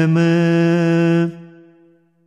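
Male voice holding the final sung note of a line of a ginan, an Ismaili devotional hymn, at a steady pitch. The note breaks off about a second and a half in and fades away to near silence.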